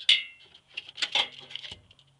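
Metal clinks and knocks from the sheet-metal disconnect box being handled: a sharp clink with a brief ring at the start, more knocks about a second in, and a click near the end.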